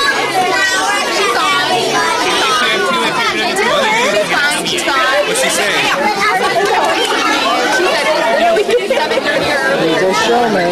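A crowd of young children talking and calling out over one another, a steady, dense babble of high voices.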